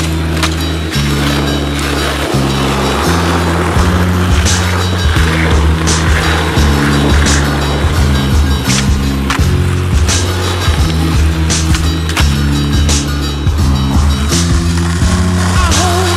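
Music with a bass line that changes note every second or so, over skateboard sounds: wheels rolling on pavement and sharp clacks of the board popping and landing.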